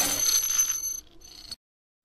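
Producer-tag intro sound effect: two high, steady ringing tones over a hiss. It fades about a second in and cuts off suddenly half a second later.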